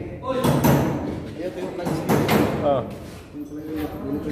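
Men's voices talking indistinctly in a large, echoing space, with a couple of sharp knocks and thuds, one about half a second in and one about two seconds in.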